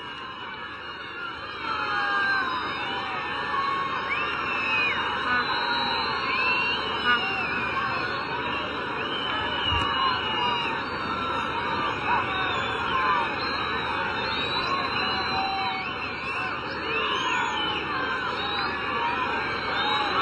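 Large stadium crowd making a steady din full of many overlapping whistles and shouts, aimed at the opposing team's kicker as he lines up a kick at goal.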